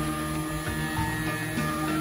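Background music with sustained tones, playing under a pause in the narration.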